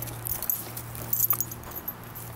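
Siberian husky on a leash nosing at the ground and stepping over dry pine needles and twigs, with small clicks and light metal jingles from its harness and leash fittings, over a steady low hum.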